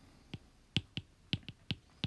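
A handful of sharp, separate clicks from a stylus tapping and striking a tablet screen while handwriting.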